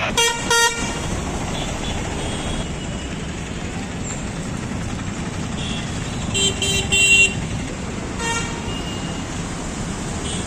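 Road traffic running steadily, with vehicle horns honking: two short honks at the start, a quick run of honks about six and a half seconds in, and one more shortly after.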